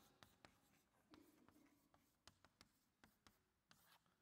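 Chalk writing on a blackboard, faint: a string of light taps as the chalk strikes the board, with a short scratch about a second in.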